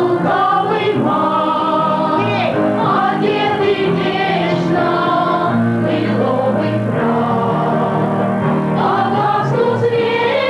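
Young performers singing a Christmas song together in chorus, held notes over a steady low accompaniment.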